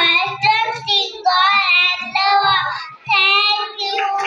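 A group of young children singing together without accompaniment, in sung phrases broken by short pauses for breath.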